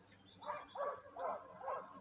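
Faint barking of dogs in the distance: a quick run of about five short barks.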